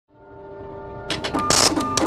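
Intro sting music: a sustained drone fades up from silence. About a second in, a cluster of sharp clicks and a loud, noisy crash sound over it.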